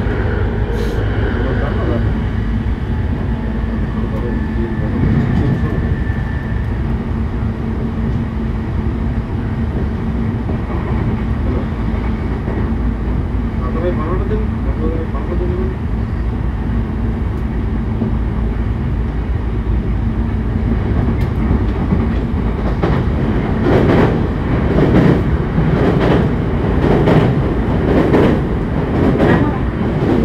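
Running noise of a JR E531 series electric train heard inside a motor car at about 80–85 km/h: a steady rumble of wheels on rail. In the last several seconds a rhythmic run of clacks and knocks from the track joins in.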